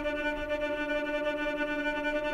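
Native Instruments Straylight granular synthesizer playing grains of a home-recorded violin tremolo, heard as one steady held pitch as it works its way through the recording.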